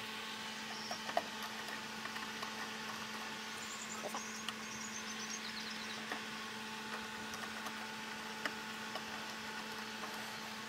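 Faint, scattered clicks and small knocks of a screwdriver and wire being worked at the screw terminals of a pool automation panel's relay block, over a steady low hum. A short run of faint high chirps sounds near the middle.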